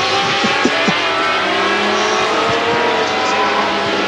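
Racing sidecar outfits' engines running hard through a corner, several machines at once, their pitch rising and falling gently as they pass.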